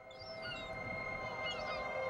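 Gulls calling: a few short high cries near the start and again about one and a half seconds in, over a steady sustained drone that fades up from silence.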